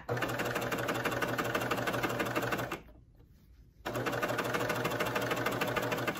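Baby Lock cover stitch machine running at a steady fast stitch, sewing a reverse cover stitch seam. It stops for about a second midway, then starts again.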